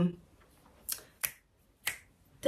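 Three sharp finger snaps, the first about a second in and the last near the end, after a voice trails off at the very start.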